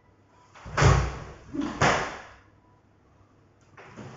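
Two sharp movements of a karate kata about a second apart, each a thud of bare feet on a wooden floor together with the snapping swish of a karate gi.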